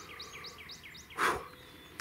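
A bird calling with a rapid series of short, high chirps, about six a second, that stop about a second in; shortly after comes a brief breathy rush of noise.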